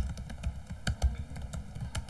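Typing on a computer keyboard: a quick, irregular run of key clicks as a short phrase is typed.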